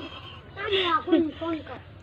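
A woman laughing in a few short bursts.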